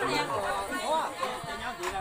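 Several people talking at once: overlapping conversational chatter among a group.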